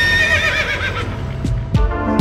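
A horse's whinny sound effect, one wavering call that falls in pitch over about a second, over intro music; drum hits come in during the second half.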